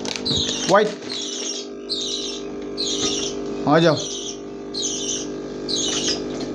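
A bird calling over and over with a short, raspy high chirp, evenly about one and a half times a second, over a steady low hum from the aquarium equipment.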